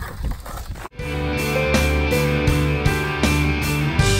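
About a second of faint outdoor noise, then rock music starts abruptly: electric guitar with sustained notes over a steady drum beat.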